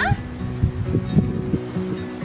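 Background music with sustained notes, over which a small Coton de Tulear gives a few short, low woofs between about half a second and a second and a half in.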